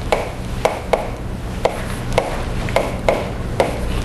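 Chalk tapping and scraping on a blackboard as a formula is written: about ten short, sharp clicks at uneven intervals over a steady low room hum.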